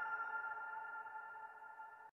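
The tail of a channel intro jingle: several held musical tones ringing out and fading away, then cut off abruptly.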